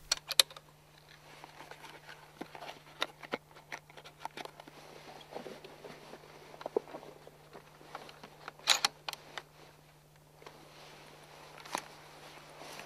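Small clicks and metallic rattles of .243 rifle cartridges being taken from their box and loaded into a scoped rifle, with a louder clatter about two-thirds of the way in and another just before the end as the rifle is handled. A steady low hum sits underneath.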